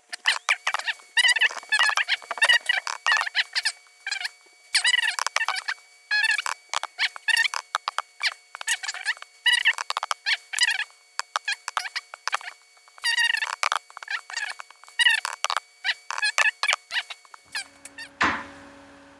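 Fast-forwarded speech: a man's voice sped up into high-pitched, chipmunk-like chattering babble.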